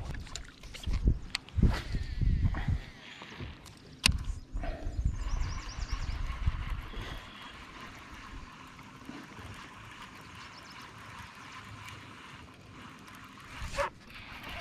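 Wind buffeting the microphone in irregular low gusts, with one sharp click about four seconds in, then a steady faint hiss of wind and water around the boat.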